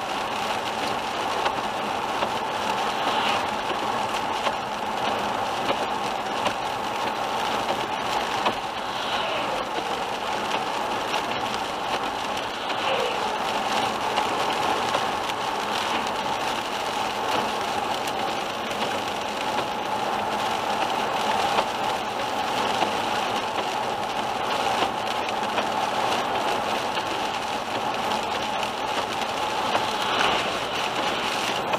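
Steady road noise of a car driving on a wet highway in rain, heard from inside the cabin: tyres hissing on wet asphalt and rain on the windscreen over a constant hum.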